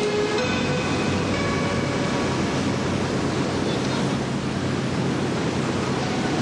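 Steady rushing noise like a moving vehicle, with the tail of music fading out in the first second or two.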